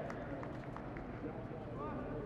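Indistinct voices of players talking on an open field, with a few faint light taps over steady background noise.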